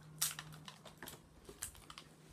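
Toy packaging being handled and opened by hand, giving a few short, sharp crackles and clicks of plastic and cardboard.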